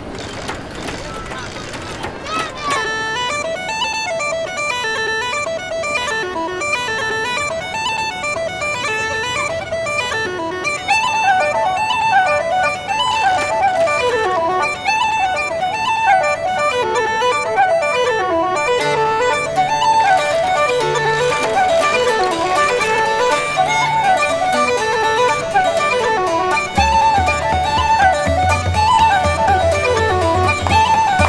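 A fast Irish traditional dance tune starts about two and a half seconds in: quick running melody lines on traditional melody instruments, with a low bass part joining near the end.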